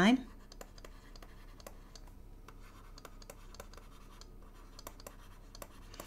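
Faint scratching and tapping of a stylus on a drawing tablet, handwriting a line of capital letters in short, uneven strokes.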